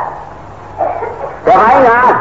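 A man's voice preaching a Buddhist sermon in Burmese. After a short pause there is a brief vocal sound about a second in, and continuous speech resumes about halfway through.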